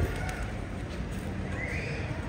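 A horse whinnying briefly near the end, over a steady outdoor murmur of crowd and traffic, with a short knock right at the start.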